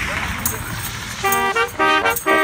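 Road traffic noise, then about a second in a brass trio of trombone, saxophone and trumpet strikes up a lively tune in short repeated chords, with a tambourine jingling on the beats.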